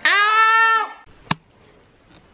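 A loud, high-pitched held yell from a person, a little under a second long, with the pitch sagging at the end, followed by a single sharp click.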